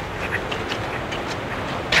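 Steady outdoor background rush, with faint footsteps on sandy ground scattered with dry leaves.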